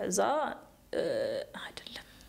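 Close-miked conversational speech, two short phrases, the second breathy and half-whispered.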